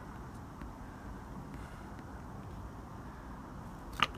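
Faint, steady low outdoor background noise, then one sharp tap near the end: a putter striking a tennis ball.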